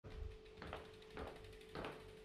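Road bicycle being wheeled by hand: short clicks and knocks about twice a second over a faint steady hum.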